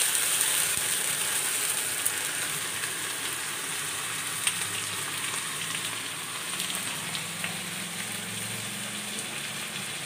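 Rice and split lentils sizzling steadily as they fry in a steel wok, with a metal spatula clicking against the pan a few times, most sharply about two and four and a half seconds in.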